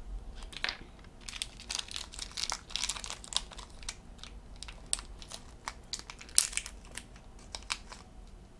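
Thin plastic crinkling with many small irregular clicks and snaps, as a small plastic toy capsule and its charm wrapping are handled and opened.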